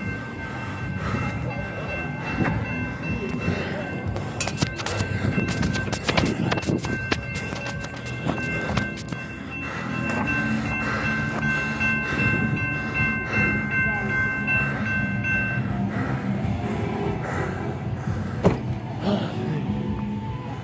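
A train approaching a railroad grade crossing: a steady high-pitched ringing tone holds for about fifteen seconds, then stops, over a low rumble. A run of sharp clicks comes a few seconds in.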